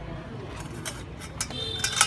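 Small metal motorcycle clutch parts being handled: a few faint clicks, then sharper metallic clinks with a brief ring near the end, over a low steady background hum.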